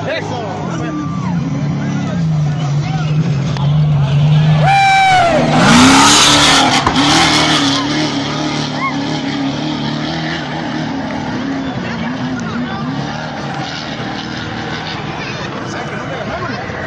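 A trophy-truck race engine runs hard as the truck speeds past on a dirt course. A loud rush of engine and dirt peaks about five to eight seconds in, then the engine fades away, with spectators' voices throughout.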